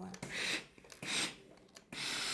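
Steam iron pressing open a seam in fabric laid over a wooden tailor's pressing block: two short hisses, about half a second and a second and a quarter in.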